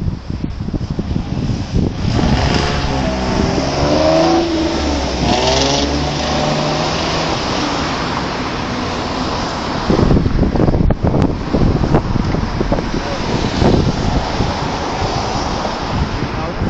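Road traffic passing through an intersection: a few seconds in, a car's engine note rises and falls as it pulls away. Later, a rougher rumble of passing cars mixes with wind buffeting the microphone.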